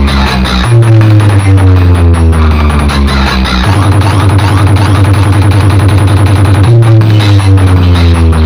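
Loud electronic dance music with heavy, booming bass played at full volume through a DJ 'box' rig of stacked speaker cabinets. Repeated falling pitch sweeps give way about halfway through to a few seconds of rapid pulsing, then the sweeps return.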